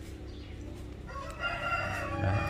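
A long, steady animal call starts about a second in and is held without break.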